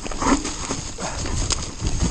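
A 2018 Orbea Rallon 29er enduro mountain bike running fast down a dirt forest trail: tyres rumbling over the ground, with irregular knocks and rattles from the bike as it hits bumps.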